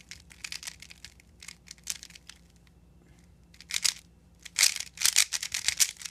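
Plastic 3x3 puzzle cube being turned through a T-perm algorithm: quick plastic clicks and clacks of the layers, sparse and quieter at first, then a loud, rapid flurry of turns in the last couple of seconds.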